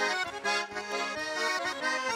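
Russian garmon (button accordion) playing an instrumental passage between sung verses: quick changing notes over chords, with no voice.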